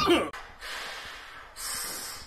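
A man coughing twice, two long, hoarse, breathy coughs right after a shouted word.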